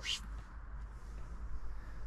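Faint, steady outdoor background noise: a low rumble and a soft hiss, with no distinct sound events.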